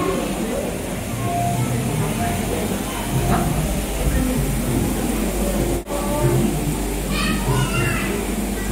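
Indistinct chatter of a crowd of visitors, children's voices among them, echoing in a large indoor hall, with music in the background; the sound cuts out for a moment about six seconds in.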